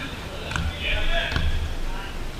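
A soccer ball struck twice, under a second apart, with two sharp thuds, amid players' shouts.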